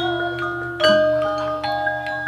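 Javanese gamelan playing: struck bronze metallophones and gong-chimes ringing sustained notes, with a fresh stroke a little under a second in and more notes after.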